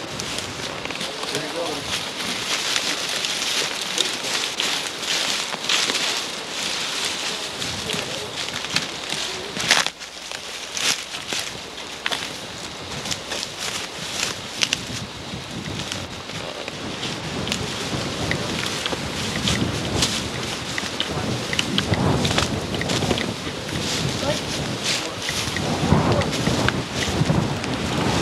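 Footsteps crunching and rustling through dry fallen leaves and brushy undergrowth, with handling noise on a handheld camcorder microphone and one sharp crack about ten seconds in.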